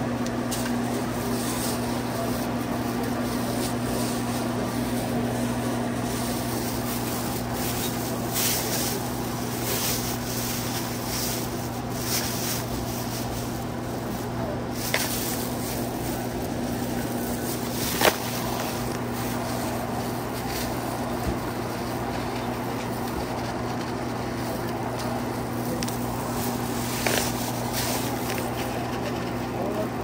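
Busy grocery-store background: a steady low electrical hum under indistinct voices, with a few sharp clicks and crinkles as a plastic bag is handled, the loudest a little past halfway.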